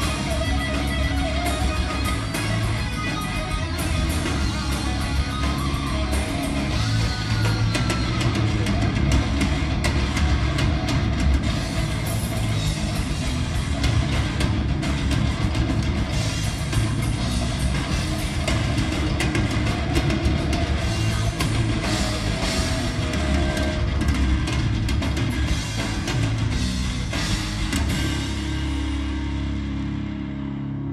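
Live rock band playing with guitars and drum kit, full and loud, with no vocal line picked out. Near the end the sound thins and gets a little quieter.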